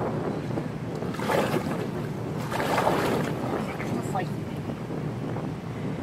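Wind buffeting a phone's microphone outdoors at the water's edge, a rough rushing noise that swells and eases, with faint voices underneath.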